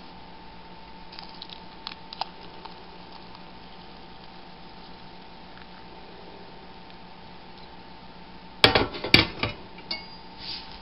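A glass tea mug clinking and knocking, with a few faint ticks early on and a quick cluster of three or four sharp strikes near the end, over a faint steady hum.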